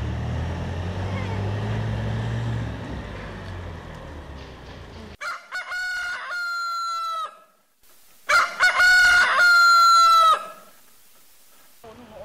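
A truck's engine rumbling as it pulls away, fading over the first few seconds. Then a rooster crows twice, each crow a long call ending on a held note, the second louder.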